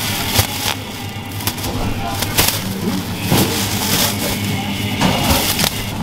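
Thin plastic produce bag rustling and crinkling in the hands, with sharp crackles at irregular moments over a steady low hum.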